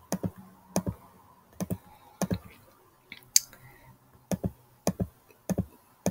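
Computer mouse clicking, about ten sharp clicks at irregular intervals, several of them quick press-and-release doubles.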